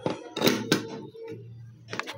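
A few sharp plastic clicks and knocks as the clear plastic bowl and lid of a small electric food chopper are handled and fitted, the loudest about half a second in, over a low steady hum.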